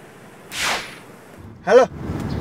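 A short swish sound effect, a rush of noise falling in pitch, about half a second in, marking an edit transition.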